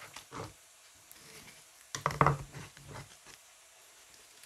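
Wet, squelching handling of raw chicken breast on a plastic cutting board as the meat is pulled apart by hand and lifted away. There is a short burst near the start and a louder, longer stretch of handling about two seconds in.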